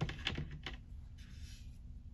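A few light clicks of small plastic action-figure hands and parts being handled, several close together in the first second, then a soft rustle.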